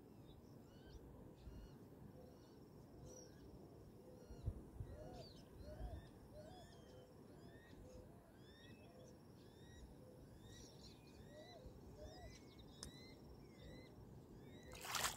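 Faint outdoor birdsong: many short rising chirps from several birds, with a string of short, lower calls repeated about once a second. A low rumble of wind on the microphone runs underneath, with two soft bumps a few seconds in.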